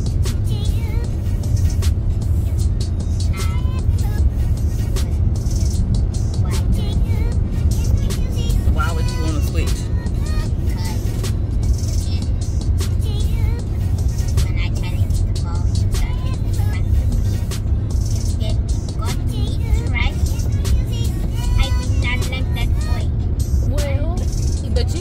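Steady low road and engine rumble inside a moving car's cabin, with background music and faint talk over it.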